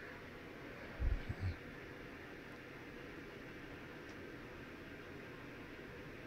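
Faint steady room noise with two brief low thumps about a second in.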